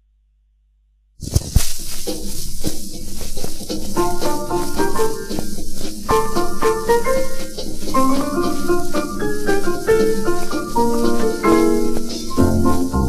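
The needle of an acoustic gramophone's soundbox is set down on a spinning 78 rpm shellac record about a second in, starting suddenly with hiss and crackle of surface noise. Then comes the instrumental introduction of a 1941 German dance record.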